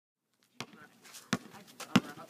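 Basketball being dribbled on a paved outdoor court: three sharp bounces about two-thirds of a second apart, the last one loudest.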